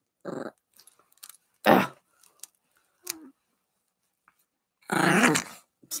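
Small dog growling in short bursts, four times, the longest near the end: the dog is annoyed at being handled while its arm is pushed back into its pajama sleeve.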